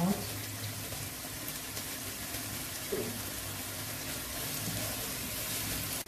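Diced carrots and vegetables sizzling in hot oil in a frying pan, a steady hiss.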